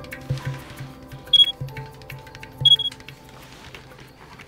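An old mobile phone giving two short, high electronic beeps a little over a second apart, over soft background music.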